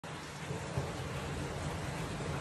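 A steady, even rushing noise with no distinct events.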